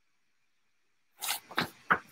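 Near silence, then a little over a second in, a few short sharp breaths or sniffs from a woman just before she speaks.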